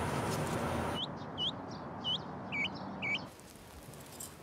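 A small bird chirping: five short, sharp chirps in quick succession, starting about a second in and spread over about two seconds.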